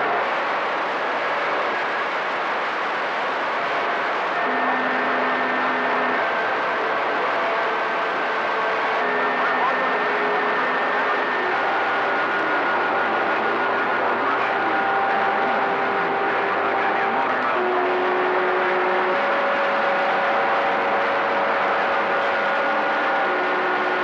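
CB radio receiver tuned to channel 28, putting out a steady hiss of band noise with several faint steady whistling tones that change pitch every few seconds. The whistles are heterodynes, where other stations' carriers beat against each other on the channel.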